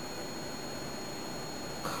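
Steady background hiss with a faint, thin high whine: room tone and recording noise, with no distinct sound.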